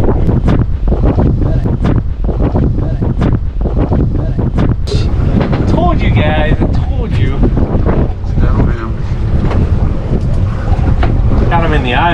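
Strong wind buffeting the microphone: a steady low rumble with gusty knocks throughout, and brief voices around the middle.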